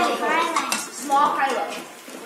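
Bowls and dishes clinking on a table as children handle them at a meal, with a few sharp clinks among the children's chatter.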